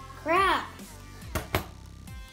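A child's short voiced sound, rising and falling in pitch, over steady background music, with a sharp knock about one and a half seconds in.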